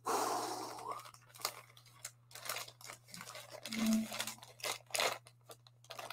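Plastic comic-book bag crinkling and rustling as it is handled. The rustle is densest in the first second, followed by scattered crackles.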